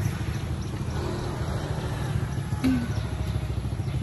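A vehicle engine running steadily with a continuous low rumble.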